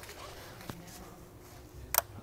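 A sharp plastic click near the end as the gray locking tab of a fuel injector's electrical connector snaps into place, the sign that the connector is fully seated and locked. A fainter tick comes about a third of the way in.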